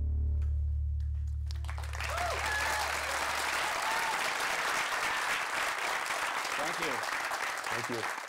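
Audience applauding, with a few voices calling out from the crowd. A low held note of music fades out under the clapping about four seconds in.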